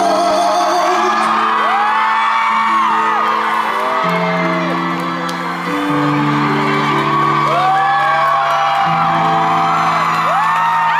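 Loud live pop concert music: a last sung note fades about a second in, and the song's outro continues as held chords that change roughly every second. High-pitched screams from the audience rise and fall over it.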